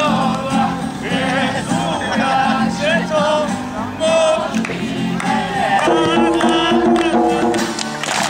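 A song sung with music, the voices over a steady repeating beat.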